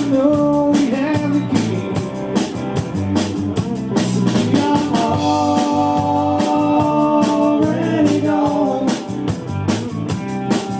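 Live rock band playing: electric bass guitar and drum kit keeping a steady beat, with a male vocal holding long notes.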